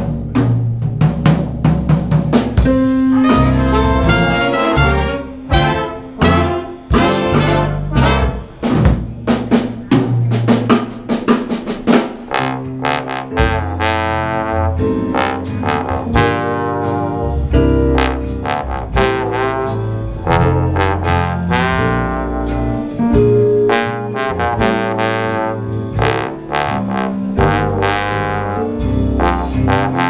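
A jazz big band playing a swing arrangement, with a bass trombone soloing out front over the band and drum kit.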